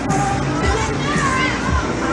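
Loud fairground ride music with a steady beat, about two beats a second, mixed with riders' voices shouting and calling out as the octopus ride spins.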